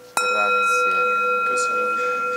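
A single strike on a bell, about a moment in, leaving a bright ringing tone that hangs on with a slow waver in its low note.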